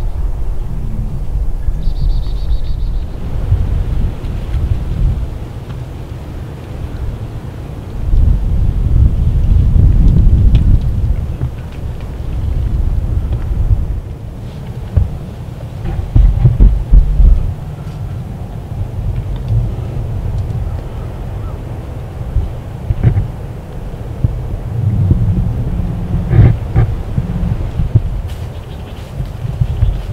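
Low, uneven rumbling noise on the camera's microphone, swelling loudest twice, about eight to eleven seconds in and again around sixteen seconds, with a few faint clicks over it.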